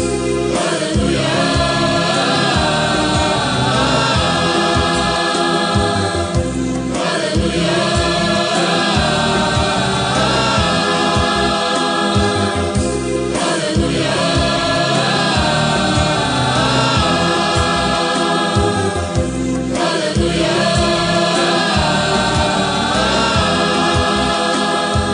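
A choir singing a gospel song with instrumental backing, in long held phrases that break and start again about every six and a half seconds.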